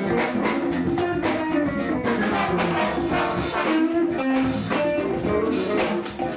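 Jazz big band playing swing, with a brass section over drum kit and an archtop guitar.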